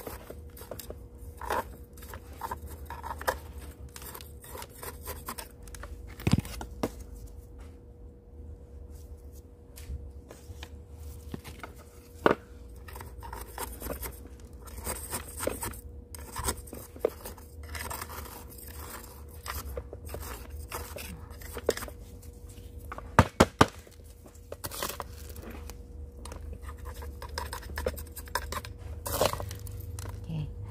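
Metal spoon scraping and scooping gritty potting mix into a small pot while repotting a succulent, grains rattling and trickling, with scattered clicks of the spoon on the pot. Three sharp clicks come in quick succession about three-quarters of the way through.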